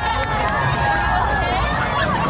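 Many high-pitched voices of children and spectators shouting and cheering at once, with the running footsteps of a crowd of runners on pavement.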